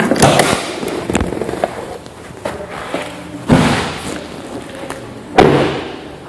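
Knocks and thumps from a 2012 GMC Terrain: the hood release lever being pulled near the start, then heavier thuds and a slam of the car being handled and shut, the loudest about three and a half and five and a half seconds in.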